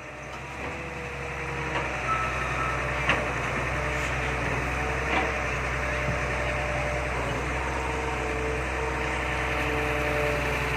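Excavator's diesel engine running steadily under load, with a steady whining tone from the hydraulics as the boom lowers the bucket into the riverbank mud. A few faint knocks.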